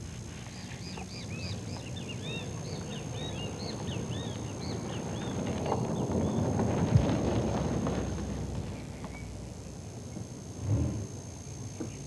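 Birds chirping in short repeated calls, then a car drives past. The sound of its engine and tyres swells to a peak about seven seconds in and fades away, and a single dull thump follows near the end.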